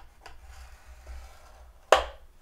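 Scoring stylus drawn down a groove of a Simply Score board, pressing a score line into cardstock: a faint rubbing scrape, then a sharp click near the end.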